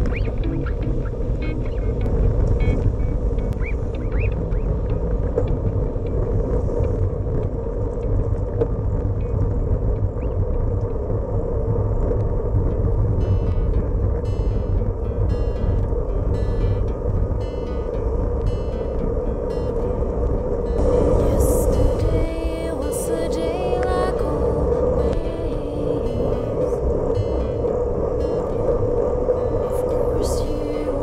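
Wind rumble and road noise on a camera mounted on a road bike riding in a racing bunch, with a steady hum. Through the middle stretch come rapid bursts of clicking, the freewheels of riders coasting.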